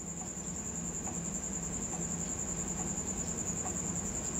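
A steady, high-pitched insect trill that pulses rapidly and does not let up, with a low hum beneath it.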